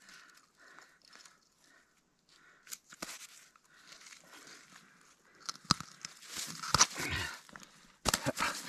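Hands working a fish out of a nylon gillnet at an ice hole, with soft crunching of snow and slush and scattered clicks. From about five and a half seconds in, the crunching grows denser and louder, with a few sharp snaps.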